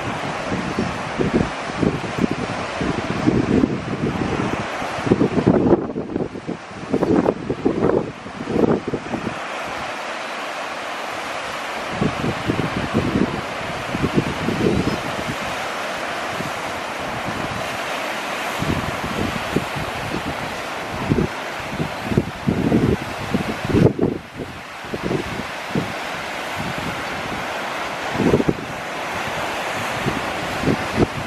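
Ocean surf washing on a sandy beach, a steady rushing hiss, with irregular gusts of wind buffeting the microphone.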